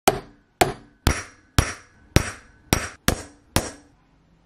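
Ball-peen hammer striking copper sheet on a steel bench block: eight sharp, evenly paced strikes about two a second, each with a brief metallic ring. The strikes dimple the copper into a hammered texture.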